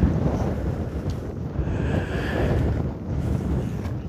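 Wind buffeting the microphone: a steady low noise that swells and eases a little.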